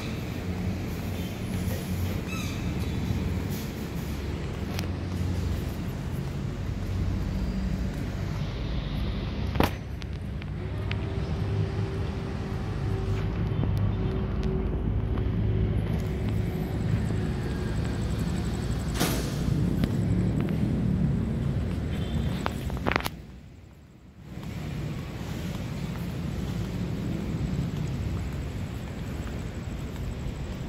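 Steady low rumble of a moving vehicle, with a single sharp click about ten seconds in. A faint steady tone runs through the middle, and the rumble drops away briefly near the end before returning.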